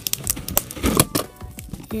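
A homemade cardboard prize machine clicking and knocking as its knob is turned. About a second in comes the loudest knock, as a prize in a plastic bag drops into the cardboard chute.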